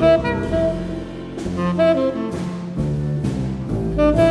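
Large jazz-funk ensemble playing live: saxophone and low brass such as bass trombones sound sustained notes, punctuated by sharp drum-kit hits on the accents.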